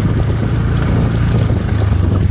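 Motorcycle engine running steadily while riding, with wind noise on the microphone.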